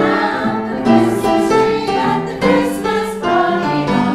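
A small group of carollers singing a Christmas carol together, several voices holding long notes at different pitches.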